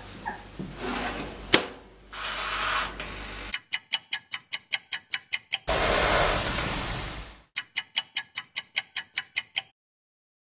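Handling knocks and a sharp click, then the mechanical timer dial of a Zojirushi toaster oven clicking rapidly, about six clicks a second. The clicks are broken by a hiss lasting under two seconds and stop shortly before the end.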